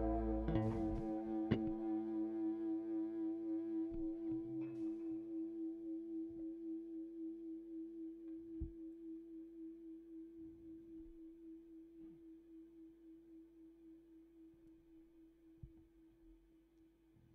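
The final chord of an instrumental post-rock piece ringing out through an electric guitar amplifier, slowly dying away with a slight steady pulsing. The low end drops out about half a second in, and a few faint clicks sound over the fading chord.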